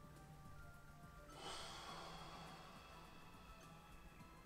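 A man's slow breath out through the mouth during a breathing exercise. It starts about a second in and fades away over about two seconds, over faint background music.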